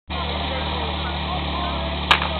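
Portable fire-pump engine idling steadily, ready for a fire-attack run, with faint voices in the background.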